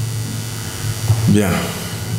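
Steady low electrical mains hum.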